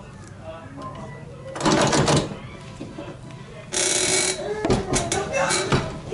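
Manual swing-away heat press being swung over and clamped shut by its handle: a couple of loud bursts of metallic clattering and clunks from the arm and platen, then a run of sharp clicks and knocks as it locks down.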